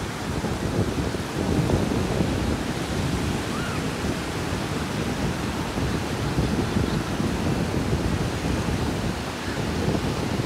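Ocean surf breaking and washing up the shore in a steady rush of noise, with wind buffeting the microphone.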